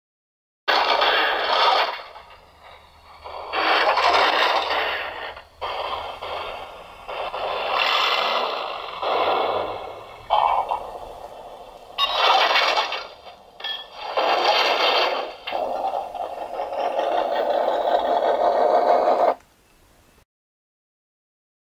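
A run of noisy, thin-sounding sound-effect bursts, each lasting a second or two, then a steadier stretch that cuts off suddenly about a second before the end.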